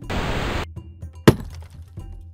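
A rushing whoosh for about half a second, then a single sharp crack as an axe head strikes a concrete wall.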